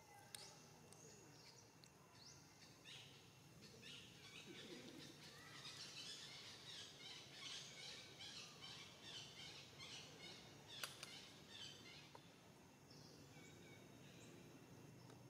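Faint chirping of small birds in the background, with a quick run of short high chirps from about four to ten seconds in and a couple of light clicks.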